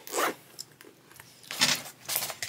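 A zipper on a black leather boot being pulled in two quick runs: a short one at the start and a louder one about a second and a half in.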